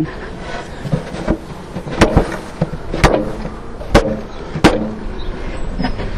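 Wooden swarm box banged down hard about five times, starting about two seconds in, to jolt a clustered honey bee swarm out of the box into the hive below.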